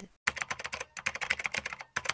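Rapid computer-keyboard typing clicks, likely an edited-in sound effect, in two runs of about half a second and a second, broken by a short pause.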